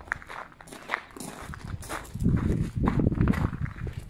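Footsteps crunching on gravel as people walk, a string of short steps. In the second half comes a louder low rumble on the microphone lasting about a second.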